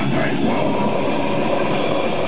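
Live metal band playing loud: distorted electric guitar and bass over drums, heard as a dense, unbroken mass of sound.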